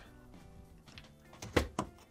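Rotary battery disconnect switch turned to the off position, two sharp clicks about one and a half seconds in, over faint background music.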